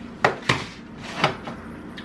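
Three sharp knocks in a kitchen: two quick ones close together, then a third about a second in, from things being handled on the counter.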